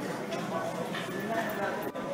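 Indistinct voices, with a few faint knocks.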